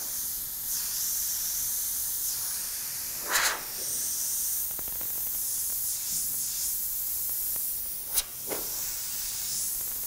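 Airbrush spraying water-based candy paint in freehand strokes: a steady hiss of air and paint, with a few brief louder puffs about three seconds in and again near the end.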